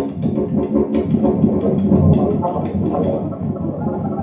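Free-improvised experimental music played live on a synthesizer keyboard: a dense, low, buzzing texture, with a quick flurry of clicks through the first second or so.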